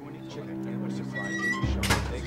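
Dramatic background score: a held chord that slowly swells, with a deep bass note coming in near the end and a sharp hit just after it.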